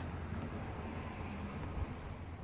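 Steady low background hum with faint noise, and a single soft click just before the end.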